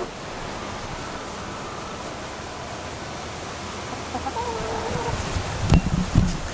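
A short wavering animal call about four seconds in, over a faint steady hiss, followed near the end by heavy low thumps as the camera is moved and knocked about.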